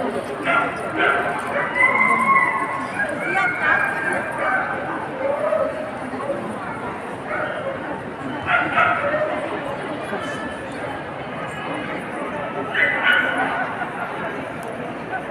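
Dogs barking and yipping in short bursts over the steady chatter of a crowd, a few times near the start, around the middle and again near the end.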